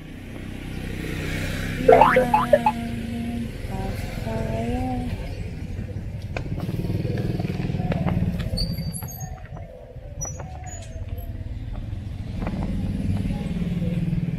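A small motor vehicle's engine running past, a low rumble that rises and falls. About two seconds in there is a loud short clatter and a held tone lasting about a second and a half.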